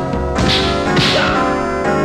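Added fight-scene sound effects: two swishes of a swung stick about half a second apart, with hit sounds, over a dramatic background score.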